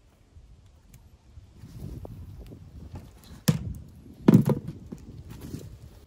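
Rustling handling of a hammer and its rubber-wrapped wooden handle, with two sharp knocks on a wooden tabletop about three and a half and four and a half seconds in.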